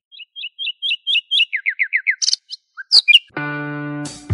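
Birdsong: a quick run of short, high repeated chirps, then a few fast downward-sweeping notes and two or three sharp calls. A held musical note comes in about three and a half seconds in.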